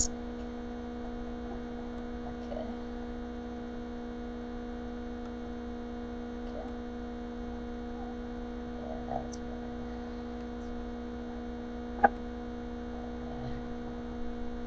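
Steady electrical hum, a stack of constant tones, with one short click about twelve seconds in.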